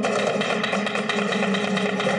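A flamenco dancer's rapid zapateado footwork: shoes striking the stage so fast that the strokes run together into a continuous rattle.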